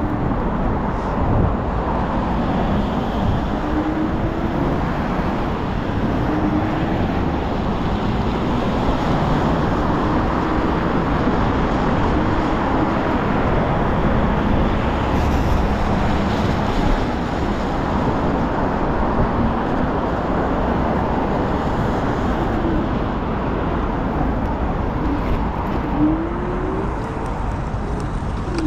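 Steady road and wind noise from riding a Dualtron Thunder 3 electric scooter on wet pavement, with car traffic running alongside. A faint whine wavers in pitch throughout and rises near the end.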